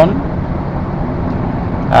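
Steady low rumbling background noise filling a pause in a man's speech, with the tail of a spoken word at the very start.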